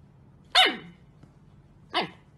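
Husky puppy barking twice: a short call that falls in pitch about half a second in, and a second one near the end.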